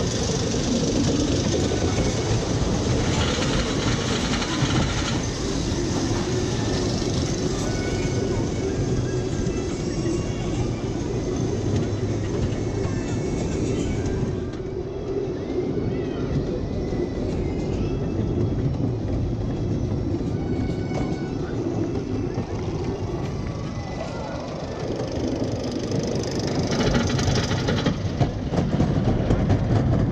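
GCI wooden roller coaster train climbing its lift hill, rattling and rumbling steadily, getting louder near the end.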